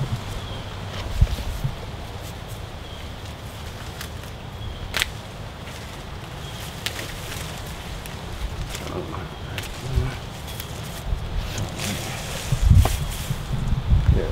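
Wind rumbling on the microphone, with scattered rustles, snaps and a few thumps from cassava stalks being handled.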